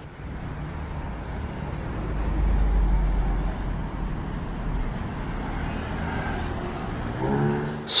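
Road traffic with a heavy vehicle driving past, its low rumble swelling to a peak about two to three seconds in and then easing to a steady traffic hum.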